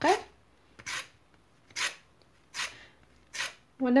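Orange peel rasped across a flat stainless-steel fine hand grater, grating zest: four short, even scraping strokes a little under a second apart.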